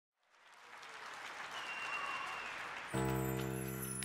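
Audience applause fading in and building, then about three seconds in the band comes in with a sustained, held chord over the clapping.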